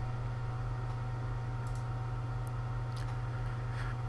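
Steady low hum with a few faint computer clicks, about two to three seconds in, as the on-screen image is zoomed.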